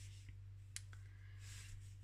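Faint handling of paper and black cardstock on a tabletop: a few light clicks, the clearest just under a second in, and a soft slide of paper, over a low steady hum.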